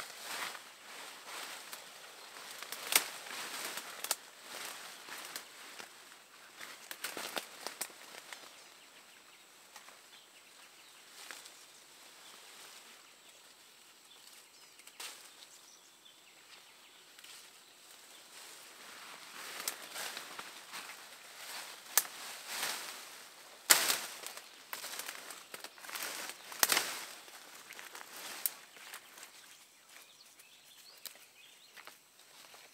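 Leafy shrub branches rustling in irregular bursts as a person pushes through dense bushes and pulls flowering vines from them, with a few sharp snaps of stems or twigs; quieter in the middle stretch.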